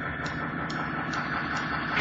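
Live rock band intro: a sustained drone of held notes swelling slowly, with a soft tick a little over twice a second keeping time.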